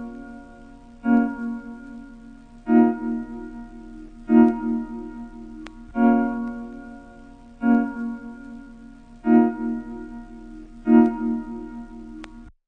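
Outro of a trap instrumental beat: a lone keyboard chord without drums, struck seven times about every second and a half, each one fading out.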